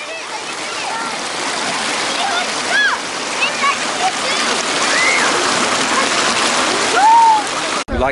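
Creek water rushing and splashing over a small rock ledge in a steady, loud cascade that fades up at the start.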